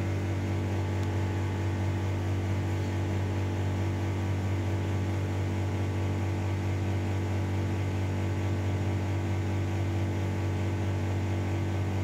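Steady electric hum from an electric fan's motor running: an even low drone with fainter steady tones above it, unchanging throughout.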